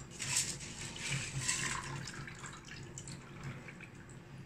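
Freshly washed, wet rice and its water spilling from a metal pot into a clay baking dish, in an irregular watery trickle that is louder at first and fades toward the end.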